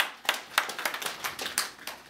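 A few people clapping their hands: a quick run of sharp, separate claps, several a second.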